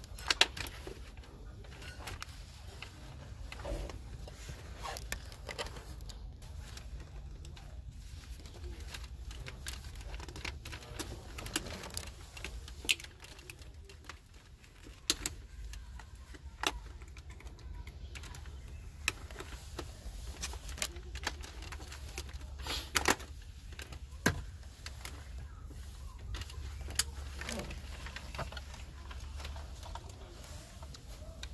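Irregular clicks and knocks of hard plastic console trim and wiring connectors being handled and worked with a screwdriver, over a steady low hum.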